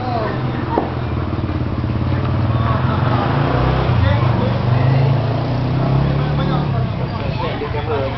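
A motor vehicle's engine running nearby, growing louder through the first half and fading near the end, with people talking over it.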